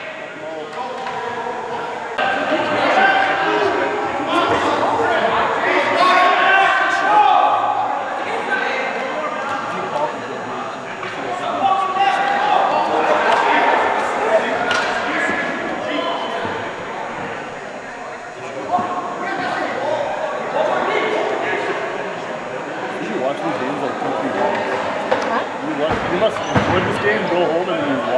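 Indistinct voices of players and spectators calling and chattering, echoing in a gymnasium, with scattered knocks of sticks and ball on the hardwood floor.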